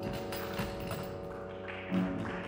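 Small live instrumental ensemble playing: a held wind chord with scattered light percussion strikes.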